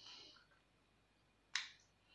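Faint mouth sounds of someone eating cake: a soft breath at the start, then a single sharp lip smack about one and a half seconds in.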